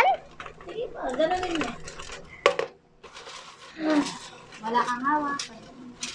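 Folded paper raffle slips rustling and being stirred inside a metal bucket, with light metallic knocks from the bucket and one sharp clank about halfway through.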